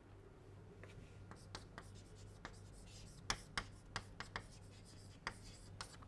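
Chalk writing on a blackboard: a faint series of short, irregular taps and scratches as the chalk strikes and drags across the board.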